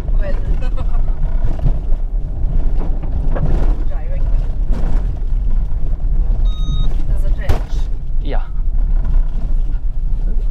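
A 2023 Skoda Kodiaq driving over a dirt off-road course, heard from inside the cabin: a steady low rumble of tyres and engine. A short electronic beep sounds once, a little past the middle.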